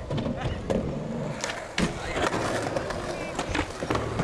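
Skateboard wheels rolling on concrete, with several sharp clacks of boards hitting the ground.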